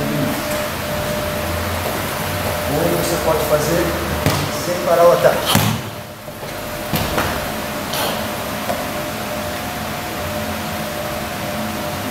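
A few dull thuds of bodies landing on a training mat as a partner is thrown in aikido practice, over a steady hum.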